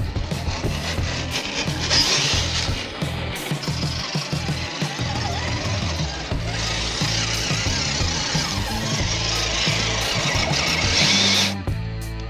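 Background rock music.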